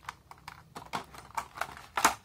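Small plastic parts clicking irregularly against a clear plastic blister tray as tiny action-figure hands are picked out of it: about eight to ten short, light clicks, a little louder toward the end.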